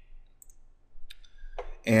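A few separate computer mouse clicks, short and light, spaced a fraction of a second apart.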